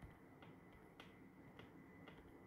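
Near silence with faint, short clicks about two a second.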